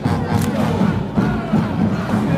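High school marching band playing loud brass over drums, with crowd shouting and cheering on top.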